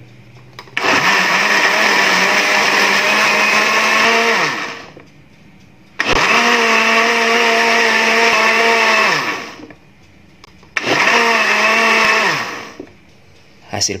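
Electric countertop blender running in three bursts of a few seconds each, blending banana peels with eggs, oil and sugar into a batter. It is switched off between bursts to spare the motor, and each time its pitch falls away as it spins down.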